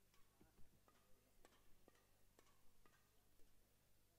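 Near silence in a large hall, broken by faint, sharp light taps about twice a second.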